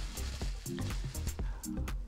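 Plastic bubble wrap crinkling and crackling in short clicks as it is pulled off a baitcasting reel by hand, over soft background music.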